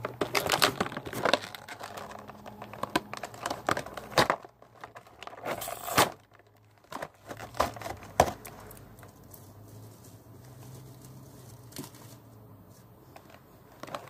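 Plastic and cardboard action-figure packaging crinkling and tearing, with scattered sharp clicks and knocks as it is pulled open; busiest and loudest in the first half, quieter from about nine seconds in.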